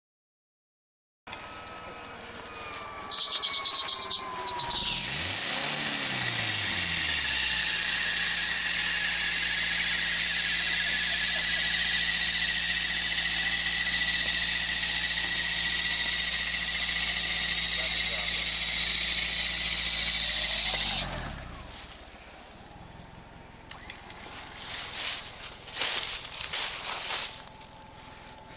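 Electric winch on a Geo Tracker running under load while pulling the truck out of a creek. It gives a loud, high whine over a steady low hum that starts about three seconds in and rises in pitch as the motor spins up, then holds steady. It cuts off with a brief falling pitch about three-quarters of the way through, followed by a few sharp knocks and clatter near the end.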